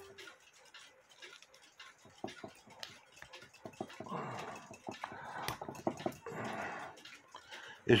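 Faint metal clicks and scrapes of a cuckoo clock main wheel assembly being pried apart by hand, its chain wheel worked off the ratchet gear. Three short muffled sounds come between about four and seven seconds in.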